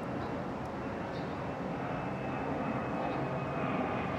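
Airplane flying overhead, its steady engine drone slowly growing louder.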